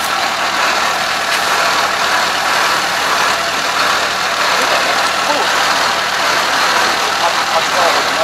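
Kubota ARN460 combine harvester running steadily while standing still, its engine and machinery giving an even, unbroken mechanical noise.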